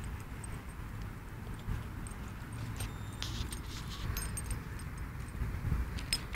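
Steady low rumble of wind on the microphone outdoors, with faint scattered metallic clicks and jingles.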